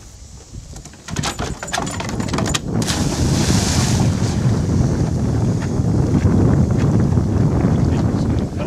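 A dog leaps off a wooden dock into a pond and lands with a loud splash about three and a half seconds in, after a quick run of knocks. Then a steady low rumble of wind on the microphone as the dog swims off.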